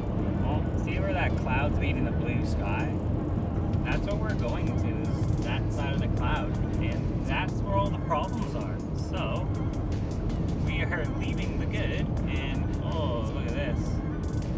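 Steady road and engine noise inside a moving car's cabin, with a song with a singing voice playing over it.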